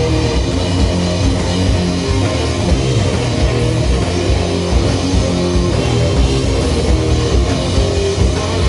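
A live rock band playing an instrumental passage: electric guitars sustaining low, heavy chords over a drum kit, loud and continuous.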